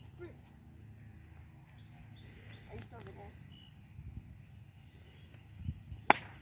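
Quiet outdoor golf-course background with a few faint bird chirps, then near the end a short, sharp thump as a junior's golf driver swings down through the ball and turf.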